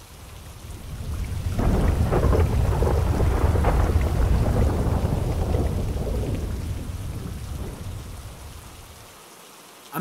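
A long roll of thunder over steady rain. It builds over the first couple of seconds, rumbles loudest for a few seconds, then slowly fades away.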